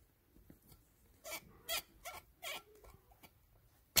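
Pliers gripping and twisting a valve stem seal off its valve guide on a 1.9 TDI cylinder head: four short squeaky scrapes in the middle, then a sharp metallic clink near the end.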